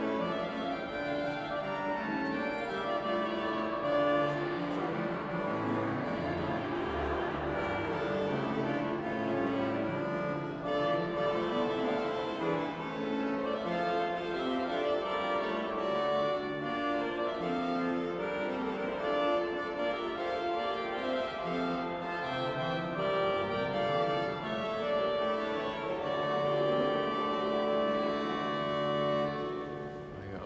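1969 Metzler pipe organ being played: sustained chords and moving lines, with a few low bass notes about six to eight seconds in. The playing stops just at the end.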